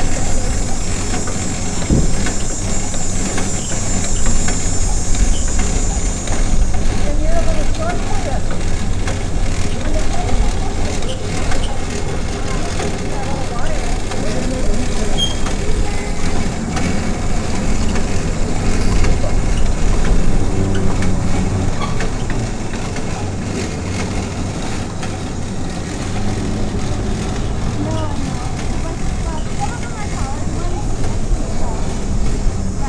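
A vehicle engine running steadily at low speed, with a constant low rumble, a faint high hiss through the first six seconds, and indistinct voices at times.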